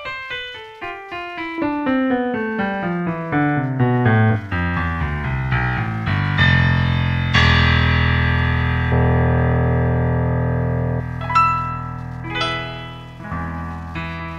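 Recorded Yamaha Genos piano voice playing a fast descending run of notes, then held chords, then a few struck notes and a rising run near the end.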